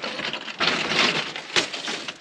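Loose broken rock crunching and clattering as someone moves over a rubble pile, a dense burst of scraping with many small clicks lasting about a second.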